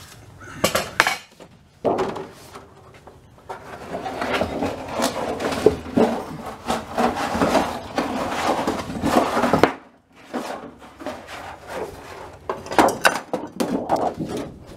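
Razor knife scoring a sheet along a metal level and the sheet being worked along the score: a few sharp knocks first, then about six seconds of scraping and crackling that stops abruptly, then a cluster of clicks and knocks near the end.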